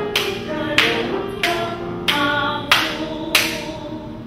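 A Chinese hymn sung with musical accompaniment, punctuated by six sharp handclaps about two-thirds of a second apart. The singing fades out near the end.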